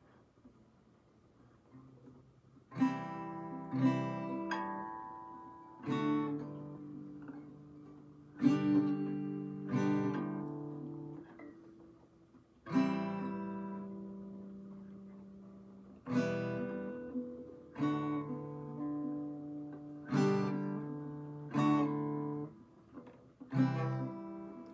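Acoustic guitar strummed one chord at a time at an uneven, slow pace, each chord left to ring and fade before the next. It is a beginner practising chord changes. The playing starts about three seconds in.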